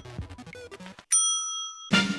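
A single bright bell-like ding struck about a second in, ringing out for most of a second, as a sting in a TV show's opening jingle. Quieter music plays before it.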